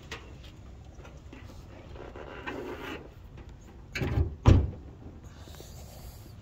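A car's hood being shut: a softer thump about four seconds in, then a loud bang half a second later as it slams closed.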